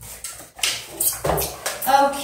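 Paper rustling as children open and leaf through their textbooks, several short rustles, with brief snatches of children's voices.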